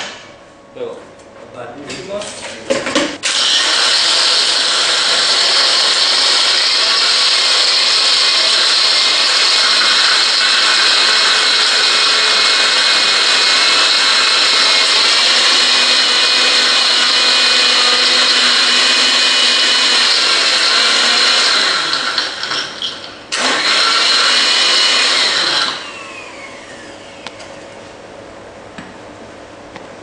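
Bar blender crushing ice with cucumber, ginger, gin and sugar into a frozen cocktail: after a few short knocks it runs steadily for about eighteen seconds, stops briefly, then runs again for about two seconds.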